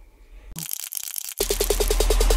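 Edited transition sound effects. A high hiss comes in about half a second in, then about 1.4 s in it gives way to a loud, rapid buzzing rattle of about a dozen pulses a second over a deep bass hum.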